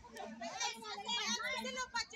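A group of women chattering and calling out over one another, several voices at once with lively rising and falling pitch.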